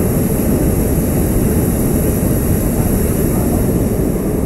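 Hot-air balloon propane burner firing in one long, loud, steady blast, a rushing noise heavy in the low end.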